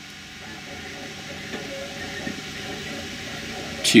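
Faint handling noise of hands twisting a thin wire around a diode lead, over a steady room hiss.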